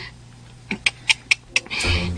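A few quick, sharp clicks or taps in a row about a second in, followed by a short breathy, hissing sound near the end.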